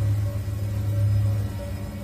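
A low, steady rumbling drone with a faint sustained higher tone over it, easing off a little in the second half.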